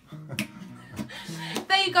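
Acoustic guitar being strummed and picked, with one strum about half a second in and a few low notes stepping after it. A voice starts speaking near the end.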